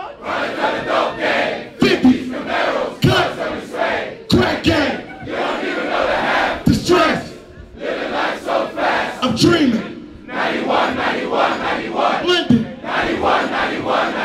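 Large concert crowd shouting together in loud, repeated bursts, about one a second, a chant with no music under it.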